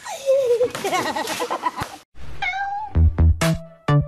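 A wailing cry for the first two seconds: it falls in pitch, then wavers up and down. After a brief gap, an electronic dance track with heavy drum-machine kicks starts about three seconds in.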